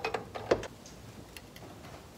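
Metal clicks and clinks of an adjustable wrench being fitted onto a vehicle speed sensor on a truck's transfer case to tighten it. There are a few sharp clicks in the first half second, the loudest about half a second in, then only faint ticks.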